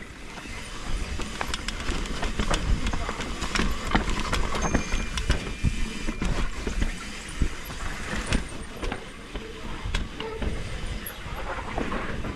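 Mountain bike riding fast down a dirt forest trail: tyre noise and rattling from the bike, with many sharp knocks as it rolls over roots and small drops. Wind rumbles on the microphone.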